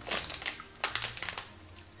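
Crinkling of a small plastic snack bag being handled, in a few short crackly bursts over the first second and a half, then fading.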